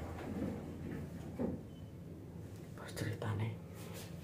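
Faint murmured voices over a steady low hum inside a moving lift car.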